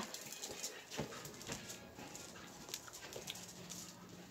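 Faint rustling and a few light clicks: handling noise of a phone camera being carried through a quiet room.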